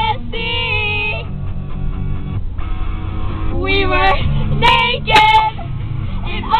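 Girls' voices singing along to a guitar pop song, broken by laughter, over the steady low rumble of a car cabin.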